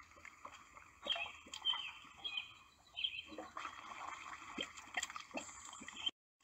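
Faint, intermittent wet sloshing and squelching of thick mud, with a few short high chirps between about one and two and a half seconds in.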